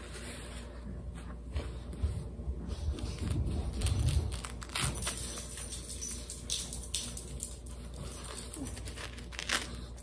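Soft rustling and crinkling of a disposable diaper and cloth being handled, with scattered light clicks and a few duller low bumps about three to four seconds in.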